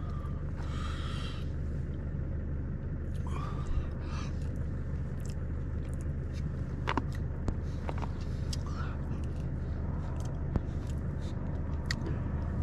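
Steady low engine hum from a neighbouring pitch, where an engine is running to charge batteries. Over it come a short rustle of a foil food pouch near the start and again a few seconds in, and a few small clicks of a spork in the pouch.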